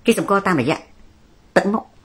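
A man speaking in a short phrase, then a brief sharp cough-like burst about a second and a half in.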